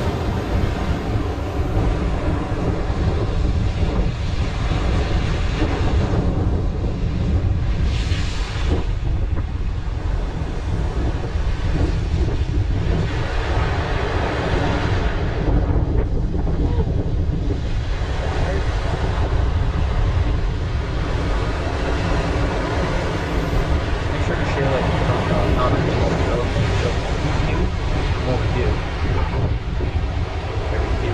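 Strong storm wind buffeting the microphone over heavy surf breaking against rocks and a seawall, a dense, steady rush that swells and eases with the waves.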